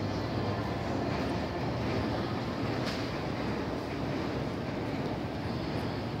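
Steady low rumble of background noise inside a large arena concourse, with no distinct events.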